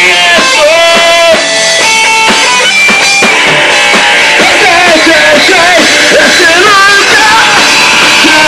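Punk rock band playing live: electric guitars, bass and drum kit at full volume, with a singer's voice over them.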